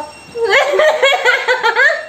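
Two women laughing, starting about half a second in and going on in quick, bouncing bursts until just before the end.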